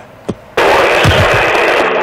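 CB base-station radio opening up about half a second in with a sudden loud hiss of static as another station keys up, with a few low falling swoops underneath.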